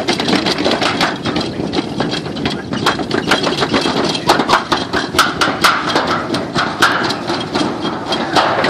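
Toboggan sled running fast down a metal chute: a continuous rumble with rapid, irregular clacks and knocks, several a second.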